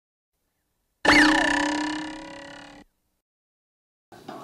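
A short added sound effect: several steady ringing tones with a quick sweep up and back down in pitch, starting suddenly about a second in, fading over nearly two seconds and cut off abruptly.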